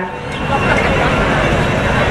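A steady rushing noise with no voice in it, spread from deep rumble up into hiss, filling a break in the speech.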